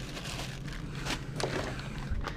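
Hands rummaging through a cardboard box of packaged camera accessories: soft rustling and scraping of plastic packaging, with a few light clicks.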